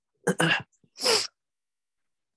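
A person's short vocal burst: a brief voiced sound followed about half a second later by a sharp hissing puff of breath.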